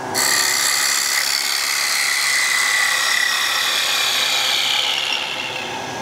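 Bowl gouge cutting into a small bowl spinning on a wood lathe: a steady hiss of shavings being sheared, with a faint high whine that drops slightly in pitch partway through and eases near the end.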